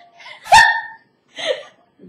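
A person laughing in short high-pitched bursts: a loud yelp about half a second in, then a shorter burst near one and a half seconds.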